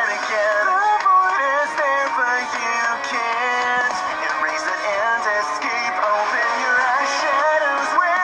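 A song with a synthesized singing voice carrying the melody over a musical backing.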